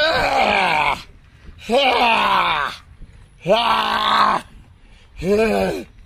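A man groaning loudly with strain, four long drawn-out groans of about a second each whose pitch bends up and then falls, as he forces himself to pedal a bicycle up a steep hill to exhaustion.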